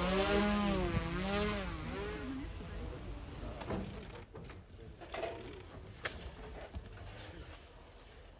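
Small quadcopter drone's propellers whining as it is hand-launched. The pitch wavers up and down and fades away over the first two and a half seconds, leaving faint background noise.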